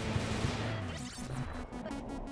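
Telenovela title-card theme music: a hit at the start, a rising sweep about a second in, then a fast, even pulsing beat of about six pulses a second.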